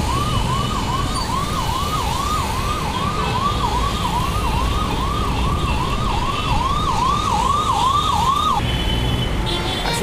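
A siren sounding in quick rising sweeps, about three a second, that stops near the end, over steady road-traffic rumble.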